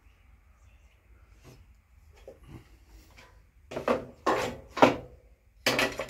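Plastic starter shroud of a push mower being handled against the engine. It is faint at first, then about four seconds in come three sharp knocks and rattles about half a second apart, with one more near the end.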